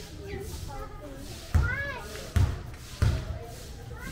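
A basketball bouncing three times on a hard court, the bounces about three quarters of a second apart, with people's voices and a call around it.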